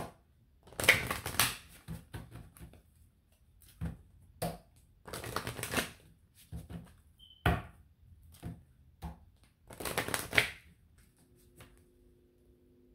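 A deck of oracle cards shuffled by hand: three bursts of riffling, about a second each, at about one, five and ten seconds in, with scattered taps and flicks of cards between them.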